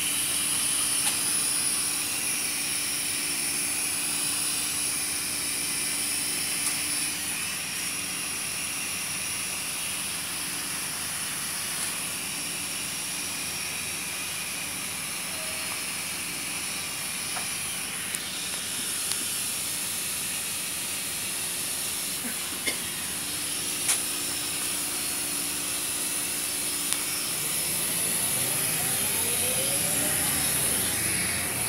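City bus interior: steady engine and road noise with a faint hum, and a few light rattles. Near the end a whine rises in pitch as the bus speeds up.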